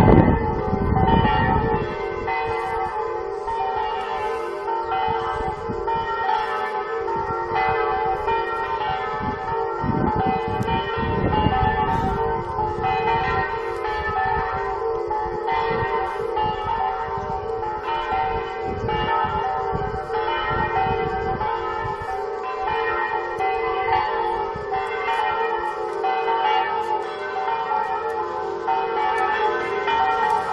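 Electronic bell simulator playing a festive swinging peal (suono a distesa) of church bells through loudspeakers on a church dome, with no real bells ringing. Several bells strike continuously in overlapping rounds.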